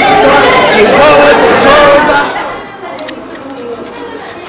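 Many people chattering at once, loud for about two seconds and then much fainter.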